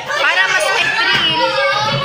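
A young female voice talking animatedly, its pitch rising and falling in lively glides; the speech-only recogniser wrote no words here.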